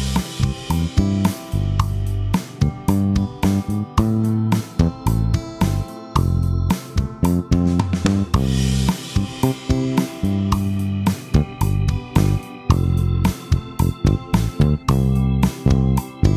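A GarageBand band arrangement playing: a programmed drum kit with snare, hi-hat and cymbals keeping a steady beat, a bass line, and a sustained Hammond organ, with acoustic-guitar chords (C, F) played live on the iPad's Smart Guitar.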